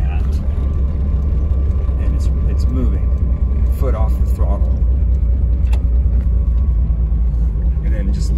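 Factory-turbocharged air-cooled Corvair flat-six, converted to fuel injection, running at idle speed in second gear with the car rolling off the throttle. Heard from inside the cabin as a steady low rumble.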